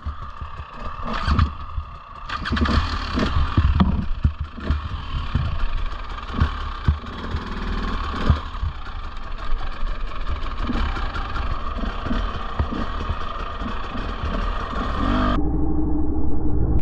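Husqvarna TE 300i two-stroke enduro engine running at low revs, with louder throttle swells a few seconds in. Irregular knocks and clatter come from the bike working slowly over loose rock.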